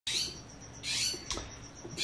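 A bird calling twice with short, high calls, about 0.8 s apart, followed by a light click.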